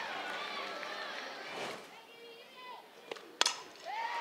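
Ballpark crowd at a softball game, with scattered voices calling out between pitches and a single sharp crack about three and a half seconds in.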